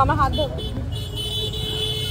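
Street traffic rumbling, with a voice briefly at the start and a steady pitched tone held for about a second and a half, from a vehicle horn or similar signal.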